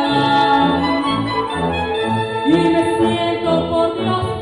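A woman singing with a military brass band accompanying her: long held notes over brass and a steady low beat about twice a second, with one note rising and held about two and a half seconds in.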